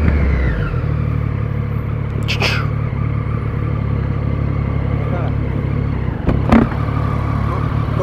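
Motorcycle engine running steadily at low revs, with a falling whine in the first second as the revs drop. Two brief loud noises cut in, about two and a half and six and a half seconds in.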